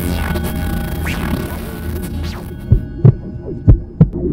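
Electronic intro jingle: a steady low hum with swishing sweeps. About two and a half seconds in, the high end drops away and deep bass thumps hit a few times at uneven intervals.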